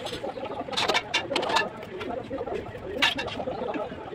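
Mason's steel trowel scraping and tapping on bricks and wet mortar while a brick wall is laid: a few sharp strokes about a second in, a cluster around a second and a half, and another near three seconds, over a steady, busy background.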